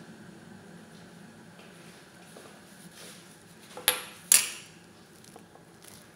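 Two sharp clatters of kitchenware, a dish or utensil knocked against a pot, about half a second apart near the middle, the second ringing briefly, over a low steady kitchen hum.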